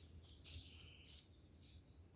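Near silence with a few faint, short, high-pitched bird chirps.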